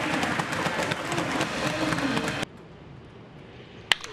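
Baseball stadium crowd noise full of claps, cut off abruptly about two and a half seconds in. After a quieter stretch comes a single sharp crack near the end: a wooden bat hitting the ball.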